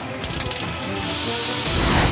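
Background music over metalwork noise: a welding crackle, then the hiss and high steady whine of an angle grinder cutting metal, growing louder near the end.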